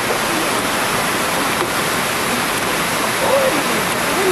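Steady, dense whirring hiss of circular sock-knitting machines running in a knitting hall, with faint voices under it near the end.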